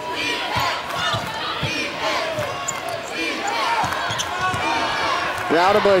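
A basketball being dribbled on a hardwood court, with sneakers squeaking as players cut and a crowd in the background. The squeaks are loudest near the end.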